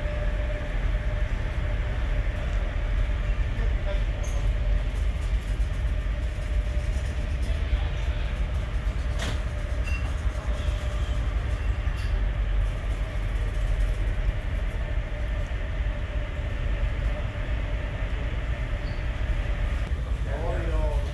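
Steady low rumble of the Santorini Palace high-speed ferry's engines running under way, heard inside a passenger lounge, with a faint steady hum above it. A single sharp click comes about nine seconds in.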